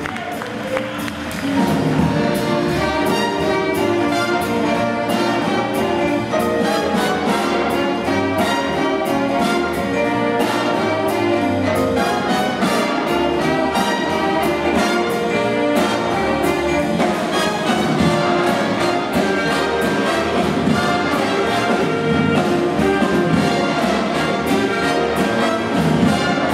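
Jazz big band playing a blues: saxophones, trombones and trumpets over piano, upright bass, guitar and drums keeping a steady beat. The full band comes in louder about a second and a half in.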